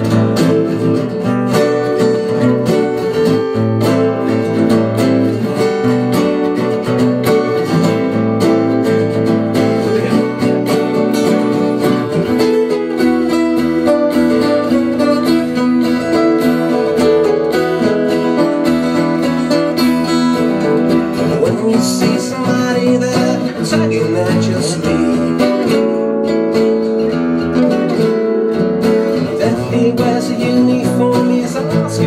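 Three acoustic guitars strummed and picked together in a live band performance of a song, playing continuously.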